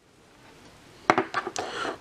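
A trading card being handled and slipped into a plastic sleeve: quiet at first, then about a second in a sharp click followed by a few lighter clicks and plastic rustling.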